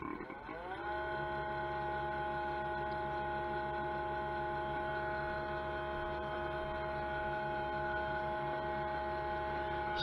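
Freeze-dryer vacuum pump starting up, its pitch rising over the first second, then running steadily. It pulls a vacuum from atmospheric pressure down to below 50 microns within seconds, the sign of a pump still pulling a really good vacuum.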